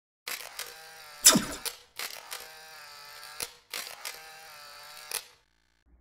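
Electronic logo-intro sound effect: a buzzy synthetic drone in about three sections, with a falling whoosh about a second in, cutting off shortly before the end.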